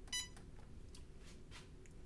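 Cricut EasyPress heat press giving one short electronic beep just after the start, as its pressing timer starts. Faint room tone follows.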